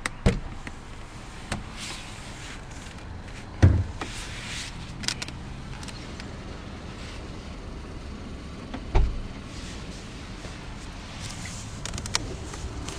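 Scattered knocks and thumps from a car's door and interior being handled, the loudest about four seconds in and another about nine seconds in, over the low steady hum of the idling engine.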